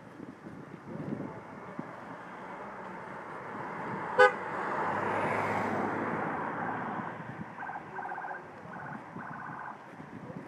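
A vehicle passes, its noise swelling and fading. A single short, loud horn toot sounds about four seconds in, and a run of short horn honks follows near the end.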